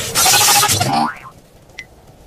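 Cartoon boing sound effect in a loud burst lasting about a second, then much quieter.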